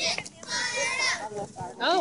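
High-pitched shouting and calling voices of children and onlookers, with a long drawn-out shout about half a second in and brief quieter gaps.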